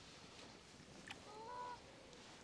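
Near quiet outdoor background with one faint, distant bird call, a single pitched note lasting about half a second, a little past halfway.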